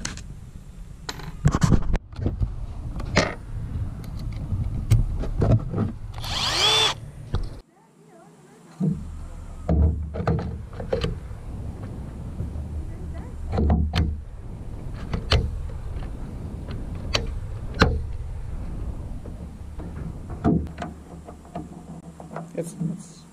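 Scattered clicks and knocks of hand work: Torx bits clicking in a plastic bit case, with a brief bright burst about six seconds in, then after a sudden break, plastic roof-rail trim being pressed and snapped into place over a low rumble of wind on the microphone.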